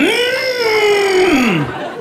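A man's long, high wordless vocal sound that rises quickly, holds, then slides down in pitch and breaks off, a comic vocal noise in a stand-up routine.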